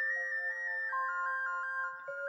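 Background music: a melody of short stepping notes over a steady held note.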